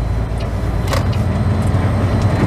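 Semi-truck's diesel engine running at low speed, heard from inside the cab as a steady low rumble, with a single sharp click about a second in.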